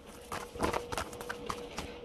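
A run of about seven light, irregular clicks and taps over a faint steady hum.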